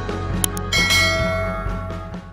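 A click, then a bright bell chime that rings out and fades over about a second, over background music with a steady beat: the sound effect of a subscribe button being pressed and its notification bell ringing.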